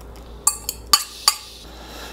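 A metal fork clinking against a small drinking glass about four times as the last of the dissolved gelatin is scraped out into the bowl of strawberry purée.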